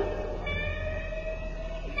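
Electric guitar holding one long sustained note that drifts slightly upward in pitch, from a live rock concert recording.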